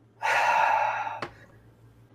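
A long, breathy inhale drawn through a small handheld smoking device, lasting about a second. It is followed by a single sharp click.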